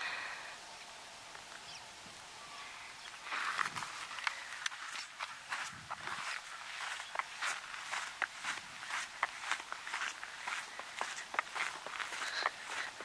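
Footsteps of a person walking on wet dirt ground. They start about three seconds in and go on as a quick, uneven run of steps.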